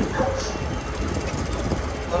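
Several go-kart engines idling together on the starting grid: a steady, even rumble with faint voices over it.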